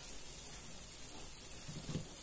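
Steady soft sizzle and hiss of a frying pan of tomato and pepper mixture cooking on low heat, with a soft low bump near the end.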